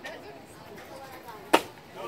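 A pitched baseball lands with a single sharp smack about one and a half seconds in, over a low murmur of spectators talking.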